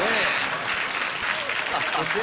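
Studio audience applauding, loudest at the start and easing off a little, with voices heard over the clapping.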